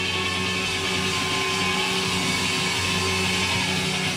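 Live electro-rock band with electric guitars, bass and drums playing a loud, sustained passage, with a thin held high note that slides slightly down and stops near the end.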